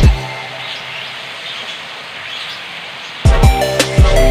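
Background music with a heavy beat drops out for about three seconds, leaving a steady sizzle of soy sauce bubbling in hot butter and oil in a frying pan; the music returns near the end.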